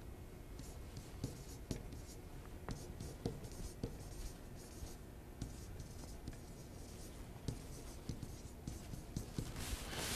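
Faint, scattered short strokes and taps of a pen writing on a whiteboard.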